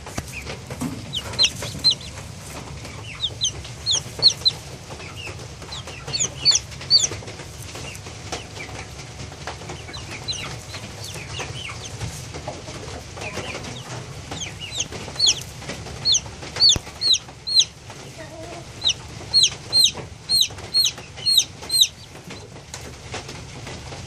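Barred Plymouth Rock chicks peeping: short, high cheeps that slide downward in pitch, coming in runs of several with pauses between, busiest in the last third. A steady low hum runs underneath.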